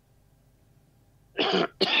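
A man coughs twice in quick succession, about a second and a half in, after a pause of near silence.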